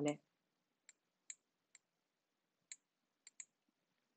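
Faint, irregular clicks of a stylus tapping on a tablet screen while handwriting, about six of them spread over a few seconds.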